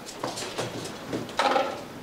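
Seven-week-old Rottweiler puppies moving about in a metal-railed pen: light scratching and clicking of paws and claws on the pen. A short whine comes about one and a half seconds in.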